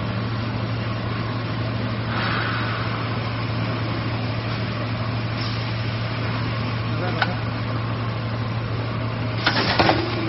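Three-layer co-extrusion stretch film machine running: a steady hum with a constant noise of motors and turning rollers, and a few sharp clicks near the end.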